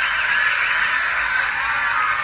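Crowd noise in a tennis arena: a dense, steady din of many voices calling out, heard through a television's speaker.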